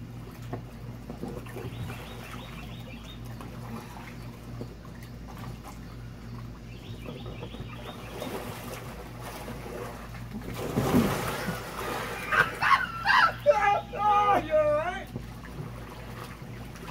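Water splashing as a man tumbles off a large inflatable vinyl pool float, about eleven seconds in, followed by loud laughing and yelling.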